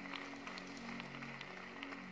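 Quiet background music of soft held chords, the notes changing slowly.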